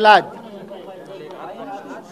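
A man's voice says one word at a press conference, then a pause filled with faint background chatter of people nearby.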